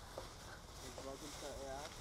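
Faint voices talking in the background, over a low, even rumble.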